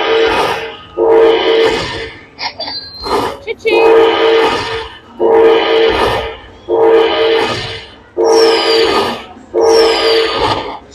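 Aristocrat Dragon Link Panda Magic slot machine tallying a finished hold-and-spin bonus. A bright horn-like chime repeats about every one and a half seconds as each fireball's value is added to the win meter, with a couple of higher sweeping whoosh-chimes in between.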